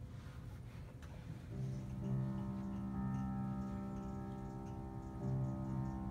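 Grand piano playing the opening chords of a Broadway-style song's accompaniment, starting about a second and a half in with notes held steady.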